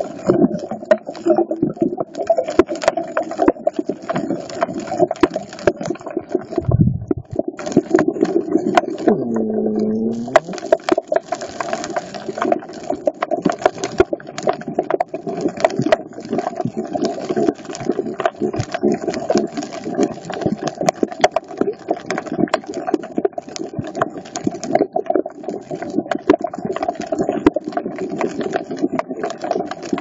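Underwater sound on a coral reef: a dense, continuous crackle of tiny clicks over a steady low hum, with a single low thump about seven seconds in.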